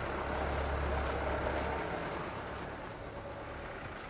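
Low, steady rumble of a motor vehicle's engine, which cuts off abruptly about two seconds in, leaving a faint outdoor hush.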